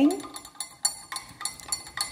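A small metal coffee spoon stirring sugar into a glass of water, clinking repeatedly against the inside of the glass with short, ringing taps.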